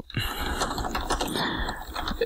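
Computer keyboard being typed on quickly: a steady, fast run of key clicks.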